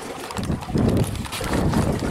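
Irregular low knocks, rubs and a few clicks from a handheld camera being moved and handled.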